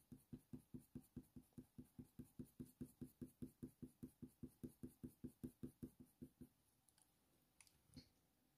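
Faint, rapid, even strokes of a Polychromos coloured pencil shading on hot-press watercolour paper, about five a second, stopping about six and a half seconds in.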